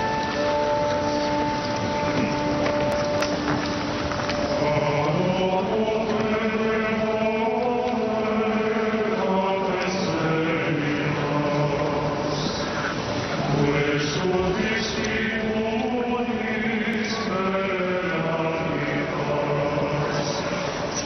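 Choir singing a liturgical chant. A held chord dies away over the first few seconds, then the sung melody rises and falls through the rest.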